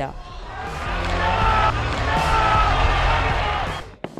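Padel rally: a few sharp knocks of the ball off rackets and the court, over steady background music. The sound fades out near the end.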